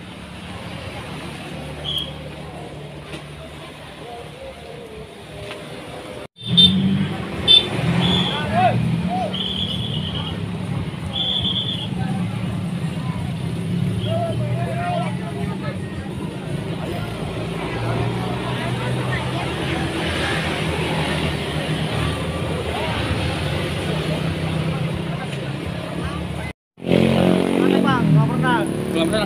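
Street traffic: motorcycles and cars running and passing with a steady low engine rumble, and voices in the background. Several short high-pitched tones sound between about seven and twelve seconds in.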